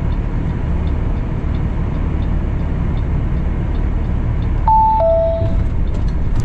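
Steady drone of the Kenworth W900L's Cummins ISX diesel, heard from inside the cab while driving. About three-quarters of the way in, a short two-note electronic chime sounds, the second note lower than the first.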